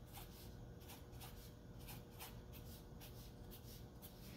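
Felt-tip marker writing on paper: a series of faint, short scratching strokes.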